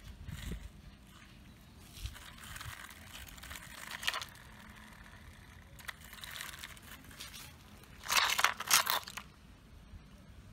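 Loose gravel crunching and scraping as plastic toy excavators are pushed and moved over it, in a few uneven bursts, loudest about eight seconds in.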